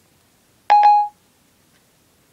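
iPhone 4S Siri chime: a short two-note electronic beep, lasting less than half a second, about two-thirds of a second in.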